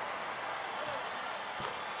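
Basketball being bounced on a hardwood court during live play, over the steady background noise of the arena.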